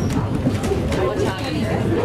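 Talking inside a wooden passenger rail coach, over the coach's steady low rumble as the train rides along.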